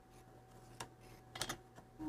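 A few faint, light clicks, one about a second in and a quick pair near the middle-to-end, from a small clay tool and a clay strip being handled on a wooden work board, over a low steady room hum.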